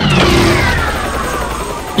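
A helicopter's engine starting up as its rotor begins to turn, with a low rumble under a whine that falls steadily in pitch.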